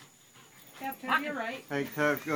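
A person's voice starting about a second in, over sounds from a Belgian Malinois holding its grip on a bite suit.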